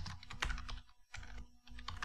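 Typing on a computer keyboard: a quick, irregular run of keystrokes, with a faint steady hum underneath.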